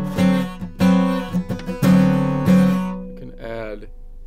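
Acoustic guitar with notes of a seven-chord shape picked one at a time, about half a dozen in all, each left ringing.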